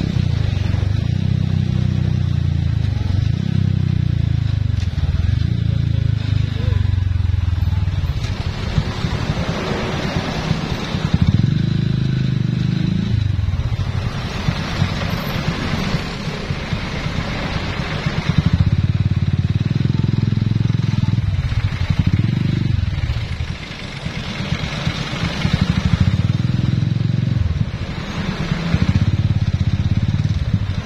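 Motorcycle engine running while riding, its pitch rising and falling repeatedly as the throttle opens and closes, with rushing road and wind noise at times.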